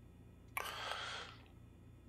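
A man's audible breath, starting sharply about half a second in and fading out over about a second, over a faint low room hum.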